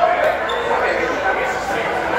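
Indistinct talking of people in a bar, with no music playing.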